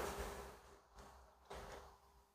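Near silence: faint room tone with a thin steady hum, and one brief soft sound about one and a half seconds in.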